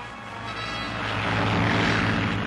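Piston engine of a biplane floatplane running at full power as it is catapulted off a battleship, the noise swelling over the first second and a half and staying loud.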